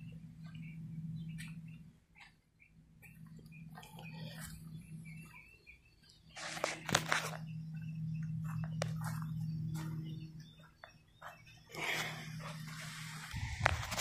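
A low, steady hum with faint high chirps, likely birds, and two brief bursts of noise about six and a half and twelve seconds in.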